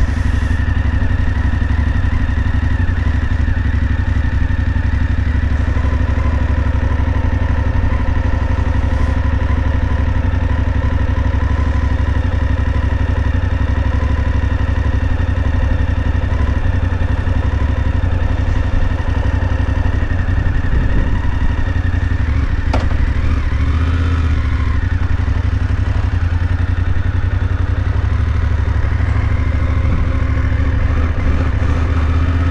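BMW F850GS Adventure motorcycle's parallel-twin engine idling steadily.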